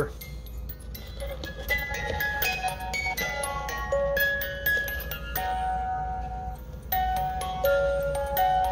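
Yunsheng wind-up music box movement playing a Disney princess song: the pins of the turning cylinder pluck the steel comb's teeth, giving a slow melody of bright ringing notes.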